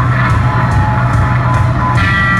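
Loud live rock music from a punk band on stage: distorted electric guitars, bass and drums playing together, with a heavy bass and regular cymbal hits, heard from within the audience.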